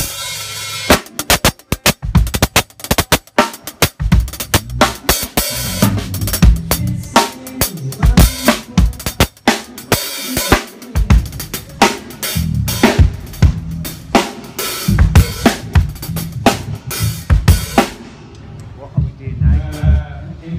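Acoustic drum kit played at a soundcheck: a busy run of bass drum, snare and cymbal hits that stops about two seconds before the end.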